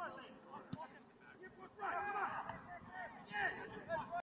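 Distant, indistinct shouting of soccer players across the pitch during play, with louder calls about halfway through and again near the end.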